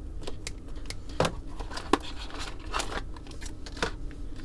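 Scissors cutting packing tape and a small box being opened by hand: a run of irregular snips, clicks and crackles.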